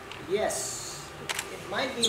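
A person speaking with pauses: a short vocal sound, then a brief high hiss and a click, then speech resumes near the end.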